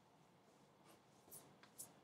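Faint pencil strokes scratching on drawing paper, a few short quick strokes in the second half.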